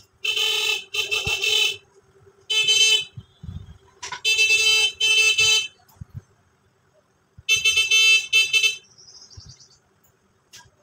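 A horn honking loudly in seven short blasts, mostly in pairs, each one a steady, flat pitch that starts and stops abruptly.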